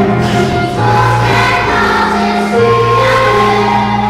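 Children's choir singing in unison over held low accompaniment notes that change every second or two.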